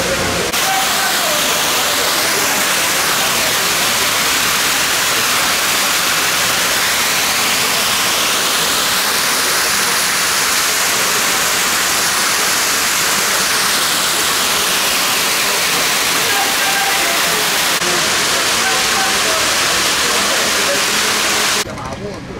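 Water pouring over the rim of the Fontana dell'Amenano's marble basin in a thin sheet and splashing down: a steady, loud rush of falling water that cuts off just before the end.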